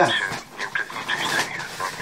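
A dog whimpering in short, high, irregular cries.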